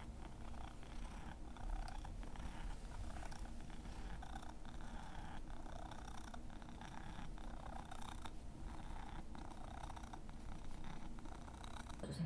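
Domestic cat purring steadily up close while being stroked.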